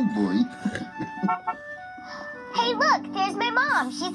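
Children's TV soundtrack played through a television speaker: gentle background music, with a child's high voice talking excitedly over a held chord in the second half.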